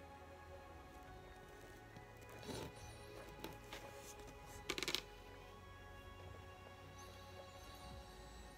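Faint background music with steady, held tones, and a few short handling sounds in the middle, the loudest a brief one about five seconds in.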